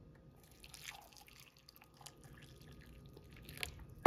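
Faint sound of hot water going into a ceramic mug over a tea bag, with a few light clicks.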